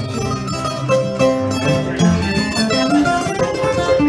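Acoustic string trio playing an instrumental ragtime tune: mandolin and acoustic guitar picking quick melody and chords over a plucked upright double bass line.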